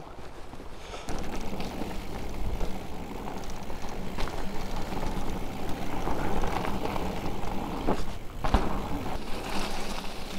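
Specialized Turbo Levo electric mountain bike ridden along a dirt trail: steady tyre and rushing-air noise with a few sharp knocks from the bike over bumps, about four seconds in and again near the end.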